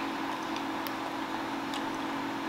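Room tone: a steady low hum with two faint ticks, one a little under a second in and one near the end.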